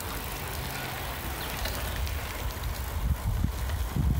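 Steady rushing noise of riding a bicycle along a tarmac path: wind across the microphone with tyre noise. Low buffeting from the wind grows stronger in the last second or so.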